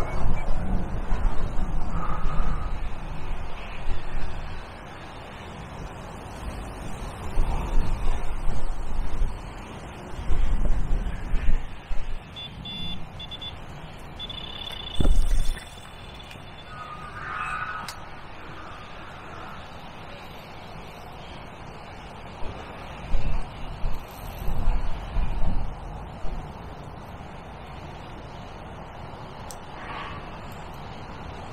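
Electronic bite alarm beeping in short bursts and then sounding a steady high tone about twelve to fifteen seconds in, signalling a fish running off with the bait. A knock follows it. Gusts of wind rumble on the microphone throughout.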